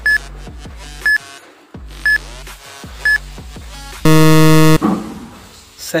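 Quiz countdown timer: four short high beeps, one each second, over a background electronic music loop, then a loud buzzer about four seconds in, lasting under a second, marking time up.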